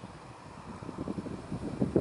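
A boat's engine on the river approaching, a low sound that grows gradually louder, with wind on the microphone.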